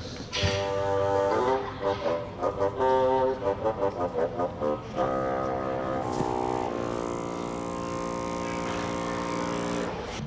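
Solo bassoon playing a string of notes that works down into its lowest register, then holding one very low note steadily for the last three seconds or so.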